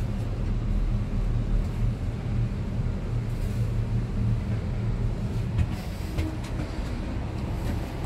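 Steady low hum and rumble of a moving cable car gondola, heard from inside the cabin, with a few faint ticks in the second half.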